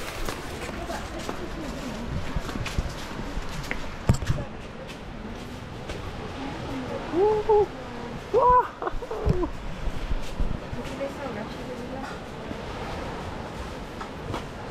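People's voices: a few short rising-and-falling calls about seven to nine seconds in, over a steady outdoor background hiss, with a sharp knock at about four seconds.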